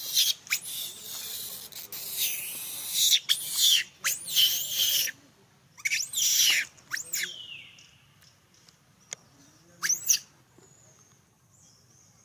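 High-pitched squeals from young long-tailed macaques, each call rising and then falling in pitch: several in the first seven seconds and one more about ten seconds in. A hissing rustle runs under the first five seconds.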